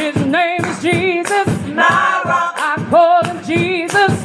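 Group of singers performing a gospel song through microphones, voices in short held phrases with a wavering vibrato.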